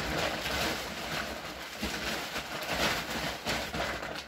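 Rustling and crinkling of a plastic shopping bag and its contents as hands rummage through it, irregular and continuous.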